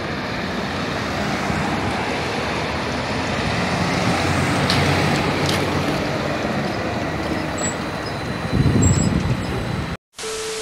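Street traffic at an intersection as an articulated electric trolleybus passes close by, with two short sharp sounds about five seconds in and a louder low rumble near the end.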